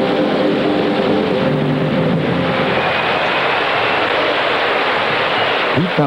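Large concert audience applauding steadily after a band and orchestra's final chord, which ends within the first half second.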